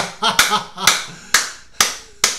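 One person clapping hands, about five claps at an even pace of roughly two a second.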